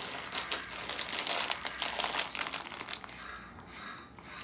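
Plastic bag crinkling as it is handled: a dense run of crackles that dies away about three seconds in.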